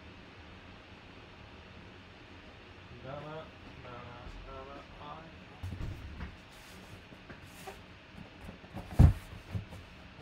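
Low room hiss, then a faint distant voice talking for about two seconds, followed by handling knocks and clicks and one loud thump about nine seconds in as a cardboard box is set down on the table.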